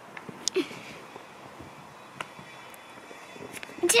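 A lull in the talk: quiet room tone with a few faint clicks and light knocks, and a brief voice sound about half a second in.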